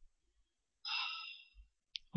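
A person's audible breath, about half a second long and fading, about a second in, between pauses in speech, followed by a faint click near the end.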